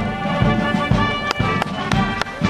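Military band playing a march: sustained brass notes over a regular drum beat, with a few sharp drum hits in the second half.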